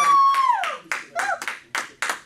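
A woman's long, high cry of praise, held for about half a second and falling off at the end, followed by about five scattered handclaps.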